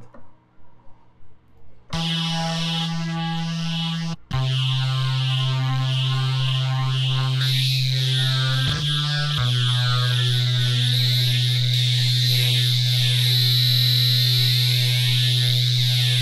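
Filthstep bass synth layer of the Bass Machine 2.5 rack in Ableton Live sustaining a dirty, buzzy bass note, starting about two seconds in. After a brief break near four seconds it holds a lower note, with a short pitch slide near nine seconds. Its upper buzz brightens partway through as the dirty, fine mod and formant macros are turned.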